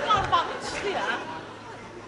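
Only speech: voices talking, growing quieter after about a second.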